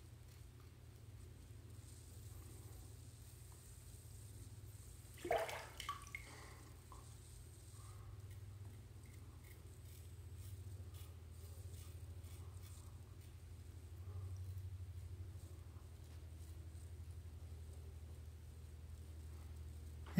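Faint scraping strokes of a Vikings Blade Vulcan double-edge safety razor cutting stubble against the grain on a third pass, over a steady low hum, with one brief louder sound about five seconds in.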